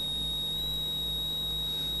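Steady high-pitched electrical whine with a faint low hum, unchanging through the pause.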